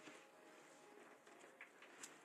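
Near silence: only faint background hiss.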